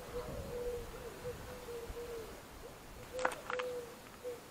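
Two sharp clicks a fraction of a second apart about three seconds in, from a car's exterior rear door handle and lock being worked by hand. Behind them a bird's low hooting calls repeat.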